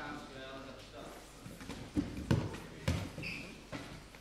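Grapplers' bodies thudding on a foam mat during a scramble, four dull impacts in under two seconds from about halfway in. A voice calls out at the start.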